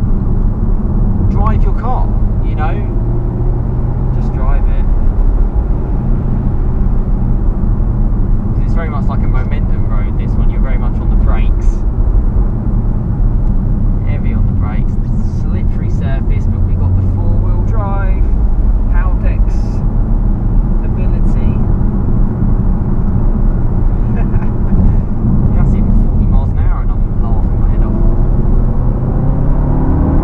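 Inside the cabin of a MK7 Volkswagen Golf R under way: the steady drone of its turbocharged four-cylinder engine mixed with road and tyre noise. The engine note climbs in pitch as it accelerates near the end.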